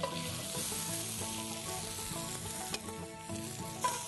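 Flour-dredged rabbit pieces sizzling steadily in a hot cast iron skillet as they are browned, with a couple of faint clicks near the end.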